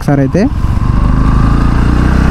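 Bajaj Pulsar NS160's single-cylinder engine running at a steady cruise, heard from the rider's seat.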